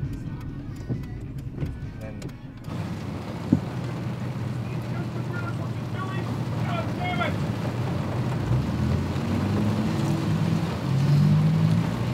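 Inside a car, a turn-signal indicator ticks evenly for the first couple of seconds. Then a steady hiss comes in and low background music plays under it.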